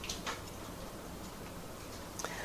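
Faint steady room noise in a pause of speech, with two faint short clicks close together just after the start.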